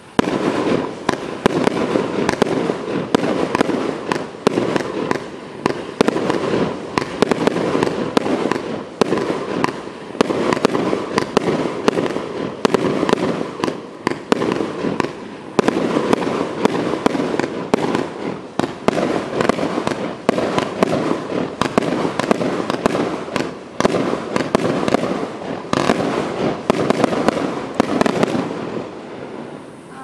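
A 49-shot Category 4 firework cake firing shot after shot, with red-tailed launches breaking into crossettes. The sound is a dense, continuous run of sharp reports that fades away near the end.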